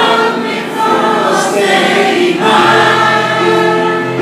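Large mixed choir of lung-disease patients singing a slow song in held, sustained phrases, with electronic keyboard accompaniment; the singing dips briefly between phrases about a second in and again past the two-second mark.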